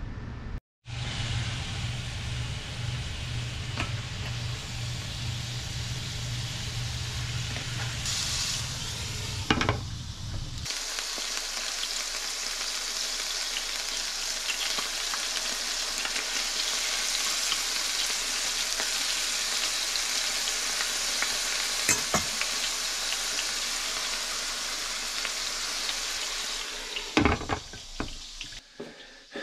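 Chicken tenderloins and minced garlic sizzling steadily in hot olive oil in a nonstick skillet, with a utensil now and then clicking and scraping against the pan as they are stirred. A low hum runs underneath for the first ten seconds or so.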